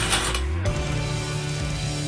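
Mechanical sound effect of gears and a ratchet clicking and whirring, part of an animated logo sting, with a noisy clatter in the first half-second settling into a steady low hum.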